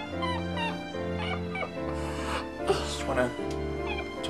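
Slow background music with long sustained low notes, over a man's high-pitched whimpering and sobbing, a string of short wavering cries, louder near the end.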